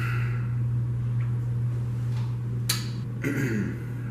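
A steady low hum, with one sharp click about two and a half seconds in and a brief faint voice near the end.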